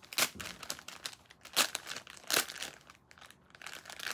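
Metallic foil pouch crinkling as it is handled and pulled open: several loud crackles with quieter rustling between.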